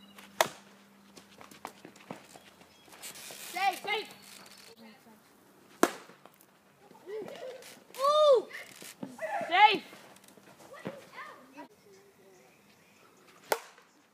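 Sharp plastic clacks from backyard wiffle ball play, three in all: one about half a second in, one near six seconds, and one near the end. Between them come high-pitched shouts from young players.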